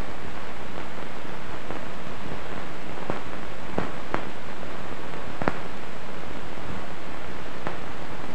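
Steady hiss of an old optical film soundtrack, with scattered clicks and pops from the worn film.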